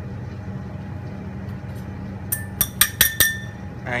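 A metal utensil clinking against a stainless steel mixing bowl: about six quick clinks within a second, past the middle, one of them ringing briefly, over a steady low hum.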